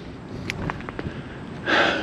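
A person's sharp breath in near the end, after a few faint scattered clicks over low outdoor background noise.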